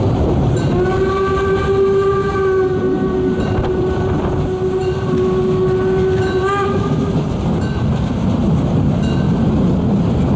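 A 2-10-2 narrow-gauge steam locomotive's whistle blows one long blast of about six seconds at a steady pitch, starting about a second in and wavering briefly just before it cuts off. Underneath is a steady rumble of the train running and wind on the microphone.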